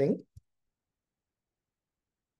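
A man's voice trailing off at the end of a sentence, a single faint click, then near silence.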